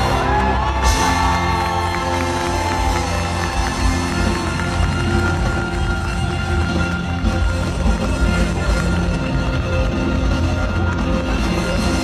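Live band music at a concert, with a man singing long held notes over the first few seconds. The crowd cheers and claps while the band plays on.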